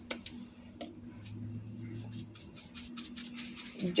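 Faint clicks of seasoning containers being handled, a few in the first second, over a steady low hum.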